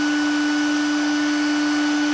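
Server power supply's cooling fan running: a loud, steady whine with a fainter higher tone over a rush of air.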